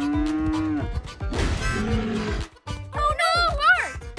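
Cartoon cow mooing: one long, slightly rising moo at the start, then rougher lowing sounds, with a wavering, warbling cry near the end, over light background music.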